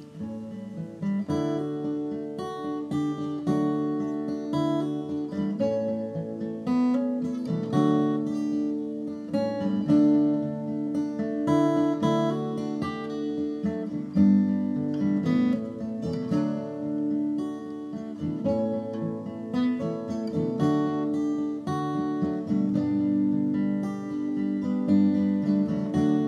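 Instrumental acoustic guitar music: plucked and strummed notes at a steady pace, with no singing.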